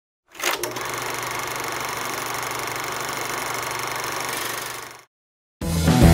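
A sharp crack, then a steady mechanical buzz with a low hum for about four seconds that fades out; music with drums starts near the end.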